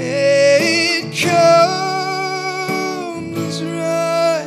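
A man singing a few long, held notes with vibrato into a microphone, over a strummed acoustic guitar, in a live acoustic performance.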